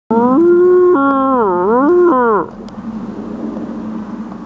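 Elk call blown by a person: one long pitched tone that holds level, steps down, dips and rises, then slides down and stops about halfway through, leaving quieter background noise.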